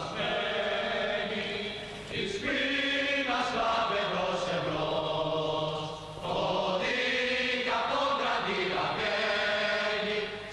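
A choir singing slowly in long held notes, the phrases changing pitch step by step, with brief breaths near two and six seconds in.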